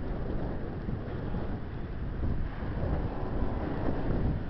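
Low, steady rumble of a red SBB electric locomotive standing at a station platform, mixed with wind buffeting the microphone; it grows a little louder about halfway through.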